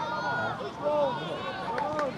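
Several high-pitched young children's voices talking and calling out over one another, with a short click near the end.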